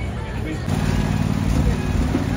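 Busy fairground background of voices and music, joined about a second in by a steady low engine-like hum.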